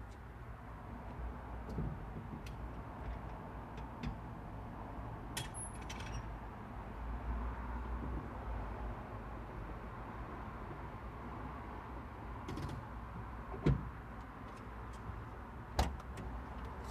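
Steady low rumble heard from inside a parked car, with scattered light clicks and two short thumps near the end.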